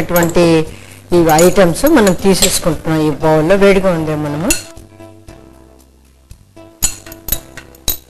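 A voice with long, wavering held notes, like singing, for the first four and a half seconds. Then a few light clinks of cashews and raisins and a glass bowl's rim against a small cup as the nuts are tipped in.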